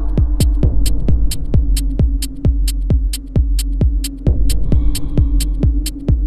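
Minimal techno track: a steady four-on-the-floor kick drum, about two beats a second, each kick dropping in pitch, with crisp hi-hats over a sustained low drone. A faint higher synth tone comes in about two-thirds of the way through.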